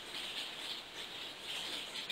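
Faint, soft sniffing and breathing as a person noses a glass of whisky held under the nose, over a low room hiss.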